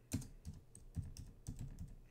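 Computer keyboard typing: a run of separate keystrokes, several a second.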